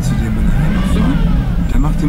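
A voice heard over a steady low rumble of vehicle noise.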